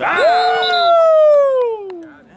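A man's long drawn-out yell that slides slowly down in pitch, with a few other voices shouting briefly at its start: players cheering a sack.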